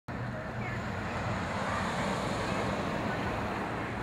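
Steady outdoor background noise, a continuous even wash with a low hum beneath it, cutting in suddenly at the start.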